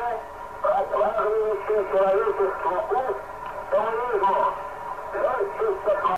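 An archival radio transmission of a man speaking over a thin, band-limited radio link, with a faint steady tone underneath. It is presented as cosmonaut Vladimir Komarov's last message during re-entry.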